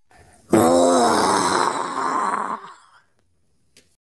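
A low, drawn-out growling groan from a voice, with no words, lasting about two seconds and fading out near the end, followed by a faint click.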